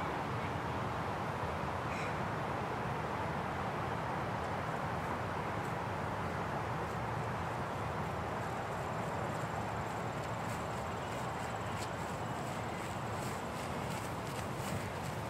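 Steady, even outdoor background noise with no distinct event, broken only by a few faint clicks.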